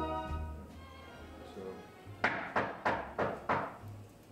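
The last notes of music die away, then five quick knocks on a door come a little over two seconds in.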